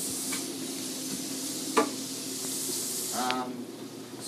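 Food sizzling in a hot frying pan, a steady hiss, with a sharp knock about two seconds in.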